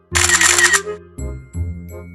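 Background music of held notes over a repeating bass line, opening with a loud, bright, noisy burst that lasts under a second.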